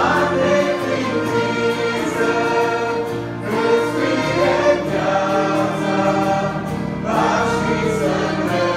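Mixed church choir singing a hymn in held chords.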